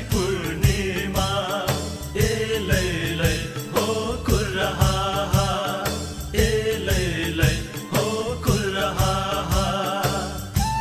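Sakela dance music: a Kirati dhol drum beating a steady rhythm with metallic cymbal strikes, under a group chanting a repeating song.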